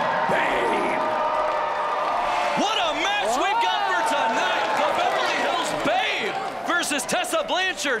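A man's voice over an arena microphone, with one long drawn-out shout early on, over crowd noise in a large hall. A few sharp knocks come near the end.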